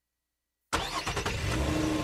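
Dead silence for most of a second, then car sound starts suddenly: a car running, with a steady engine hum and low rumble.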